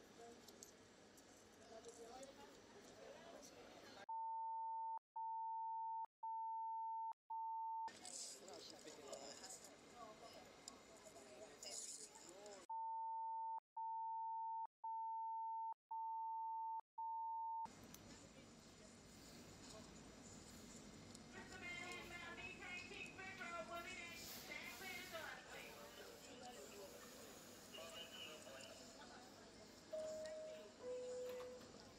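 A steady, pure, high-pitched beep tone that blanks out the body-camera audio twice: four segments of about a second each starting about four seconds in, then five more from about thirteen to eighteen seconds. This is typical of a redaction bleep laid over released police footage.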